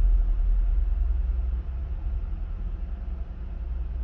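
A steady low rumbling drone with no speech over it, easing off a little toward the end.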